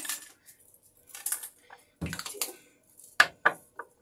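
Hair clips clicking and clinking as they are handled and fastened, a handful of short sharp clicks with the loudest pair a little after three seconds in.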